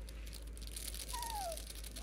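Young Cavapoo puppies shuffling and scrabbling on a pad, a soft rustling with small clicks, and one puppy giving a short falling whimper about a second in.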